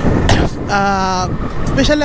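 A man's voice holding one drawn-out vowel between phrases, over a steady rush of wind and road noise.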